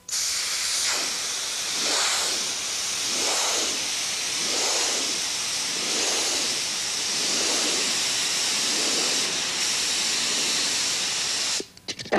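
Compressed air hissing steadily from a hand-held air-hose nozzle, a jet strong enough to hold a large Styrofoam ball aloft; its tone wavers slightly as the ball moves in the stream. It starts abruptly and cuts off shortly before the end.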